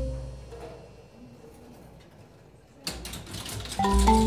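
Robotic marimba's last notes ring and die away, then comes a lull of about two seconds broken by a few sharp clicks about three seconds in, before struck notes start again near the end.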